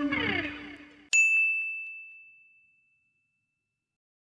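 Guitar background music ending: its held chord slides down in pitch and dies away. About a second in comes a single bright ding, a logo sound effect, that rings on one high tone and fades out over about two seconds.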